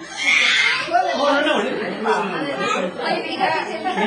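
Overlapping chatter of several people talking at once, with a brief higher-pitched voice near the start.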